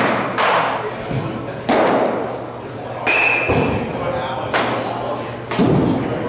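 Baseballs smacking into catchers' mitts: sharp pops about every two seconds, echoing in a large indoor hall. A brief high beep sounds about three seconds in.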